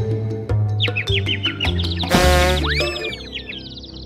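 Children's cartoon music with added cartoon sound effects: a run of quick repeated bird-like chirps and, a little after two seconds in, a springy boing glide that rises and then falls away, the kind of effect used for a character going dizzy.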